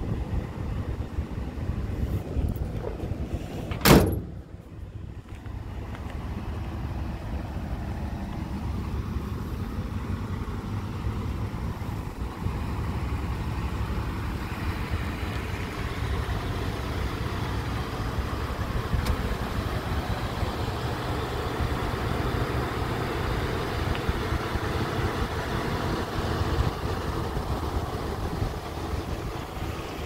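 Outdoor ambience with a steady low wind rumble on the microphone and a noisy hiss, broken by one sharp, loud bang about four seconds in.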